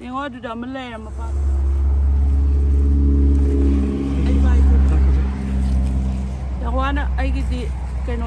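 Low rumble of a motor vehicle engine, a steady droning hum that comes in suddenly about a second in, swells loudest around the middle and fades away after about six seconds.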